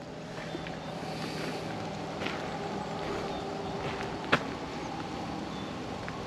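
Steady motor hum with several constant tones over a soft outdoor hiss, broken by one sharp click a little past four seconds in.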